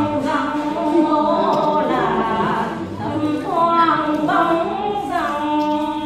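Unaccompanied quan họ folk singing by women's voices: long held notes bent with sliding ornaments, phrase after phrase.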